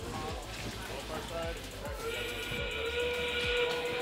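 FTC field control system's endgame warning sound, marking 30 seconds left in the match: several steady tones at once, like a whistle chord, start about halfway through and hold level. Room noise and faint background music lie underneath.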